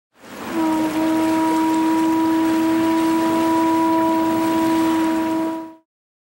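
A ship's horn sounding one long steady blast over a rushing noise, stopping sharply shortly before the end.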